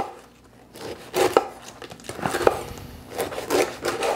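Chef's knife cutting the crust off a loaf of Italian bread on a wooden cutting board: a series of irregular cutting strokes, with the blade knocking on the board.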